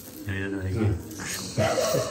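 People talking: a man's low voice about a quarter second in, then another voice near the end.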